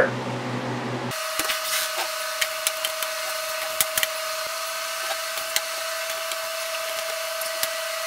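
Trays of frozen food being loaded onto the shelves of a Harvest Right freeze dryer's chamber: a series of short clicks and knocks over a steady machine hum with a thin whine.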